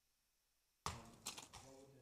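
A paper slip being handled and unfolded close to a microphone: a burst of crisp crackling and clicking that starts abruptly about a second in, after near silence.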